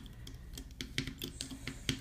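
Faint, scattered clicks and ticks of a thin metal hook against plastic loom pegs as rubber bands are lifted off, with a sharper click near the end.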